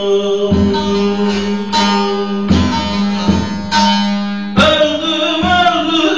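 Bağlama (long-necked Turkish saz) plucked and strummed, its strings ringing a steady drone, under a man's voice singing a Turkish folk song. A sharper, louder strum comes about four and a half seconds in.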